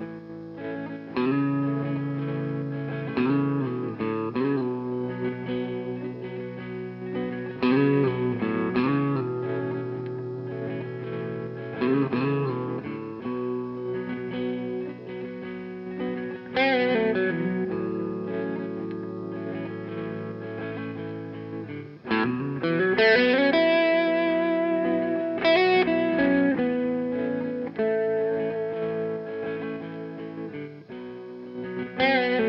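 Tom Anderson Bobcat Special electric guitar with P-90 pickups being played: sustained notes and chords, with notes gliding in pitch about halfway through and again about three quarters of the way through.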